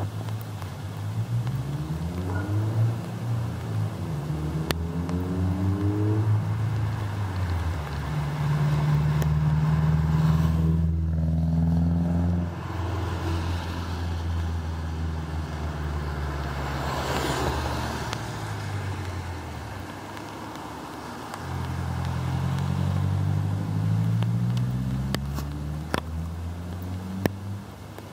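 Motor vehicles passing on the street: an engine rises in pitch over the first several seconds, holds steady, then fades, and a second engine rises and falls later on. A few sharp clicks come near the end.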